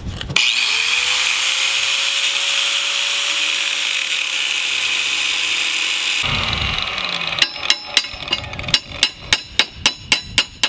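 Angle grinder with a thin wheel grinding through the rusted steel pins of an antique hog splitter's handle, spinning up with a rising whine and then grinding steadily for about six seconds before it shuts off. From about a second after that, rapid sharp metal taps, about three or four a second, as of a hammer on the pins.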